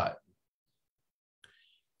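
A man's spoken word trails off, then near silence, broken about a second and a half in by a faint click and a short soft hiss.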